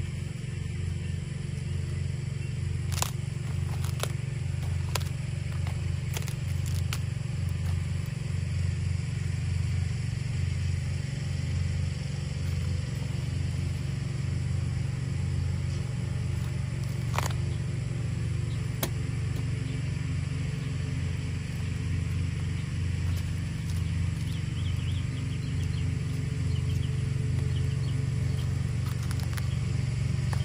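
A string trimmer (weed eater) running steadily at a distance, a low drone with a slight regular waver. A few sharp clicks and snaps stand out over it, the clearest about seventeen seconds in, as cabbage leaves are cut with loppers.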